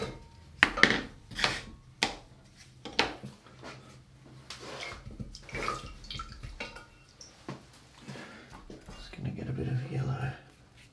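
Wooden-handled hake brushes and other studio items being picked up and set down on a work table: a run of sharp taps and knocks, closest together in the first few seconds and sparser afterwards.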